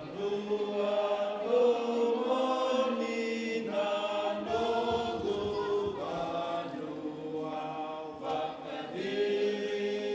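A group of voices chanting in Fijian, holding long notes together in phrases of a second or two.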